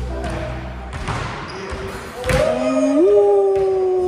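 A basketball bouncing on a hardwood gym floor, with the loudest thud about two seconds in, as music fades out. Right after it a long drawn-out voice cry, a howl that steps up in pitch partway through and cuts off at the end.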